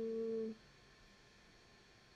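A steady pitched tone, held flat for about half a second and then cutting off, followed by faint room tone.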